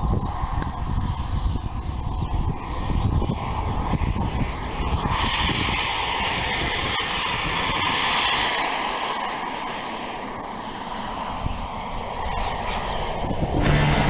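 Kingtech K100 gas turbine of a 1/5-scale model jet running at take-off power, a continuous rushing jet noise that swells as the aircraft rolls past and then eases as it climbs away. Music begins just before the end.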